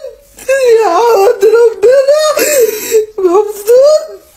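A woman crying aloud: high, strained wailing sobs in about three long phrases, the pitch rising and falling.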